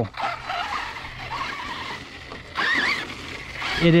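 Arrma Notorious RC monster truck's brushless motor whining as the truck drives off across grass, its pitch wavering and climbing with the throttle. There is a louder, higher burst a little before three seconds in.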